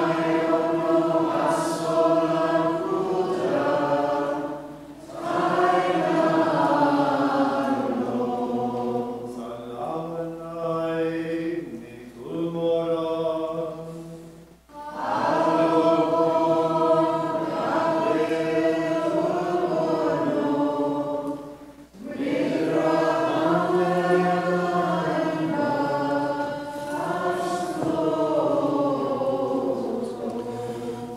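Maronite liturgical chant sung in long phrases, with short breaks between them.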